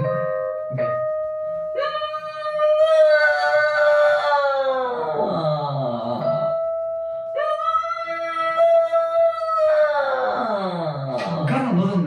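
A singer's voice practising a mixed-voice exercise. It holds a high note for a few seconds, then slides steeply down into the lower register. It does this twice, and the second phrase starts a step higher.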